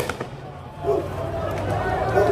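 Firecrackers cracking in the street: a sharp bang right at the start and a few lighter cracks near the end, with men shouting in the running crowd.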